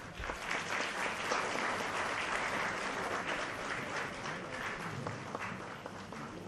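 Audience applauding, starting suddenly, loudest over the first few seconds and tapering off toward the end.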